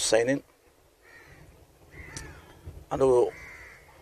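Crows cawing faintly in the background, several short calls, between brief stretches of a man's speech.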